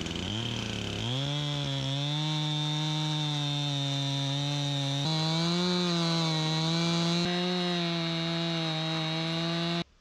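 Stihl MS 261 two-stroke chainsaw in a Granberg Alaskan small log mill, rising in pitch over the first second and then running steadily at full throttle as it rips a two-inch slab lengthwise off a cedar log. The sound stops abruptly just before the end.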